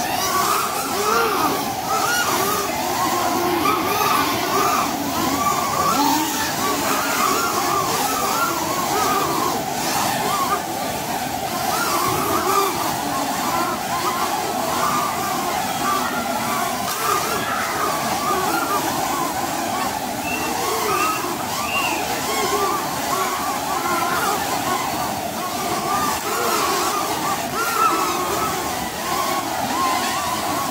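Several caged drone-soccer quadcopters flying at once, their propellers making a steady whine of many overlapping tones that keep sliding up and down in pitch as the drones speed up, slow and turn.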